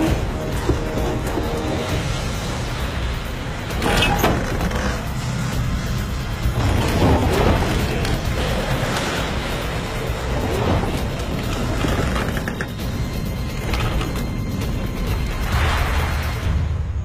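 A shake table rumbling low and steadily as it runs a simulated magnitude 10.1 earthquake under a wooden scale-model hall, with loose bricks and clods of earth knocking and clattering around the column bases and a louder clatter about four seconds in. Music plays over it.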